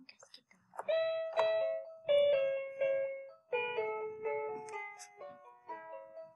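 Musical toy nativity stable playing a tinny electronic tune, one held note after another, starting about a second in. Later a second line of notes sounds beneath the melody.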